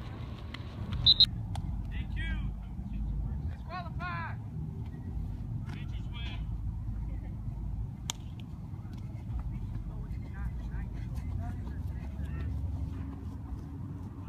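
Scattered distant voices calling out over a steady low rumble. A brief sharp sound about a second in is the loudest moment.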